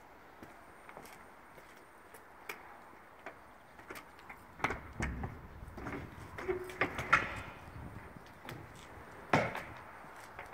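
Rear double doors of an enclosed box trailer being unlatched and opened: a run of metal clicks and clacks from the latch handle and lock bar, with a short squeak in the middle, then one sharp, louder knock near the end as the door comes free and swings open.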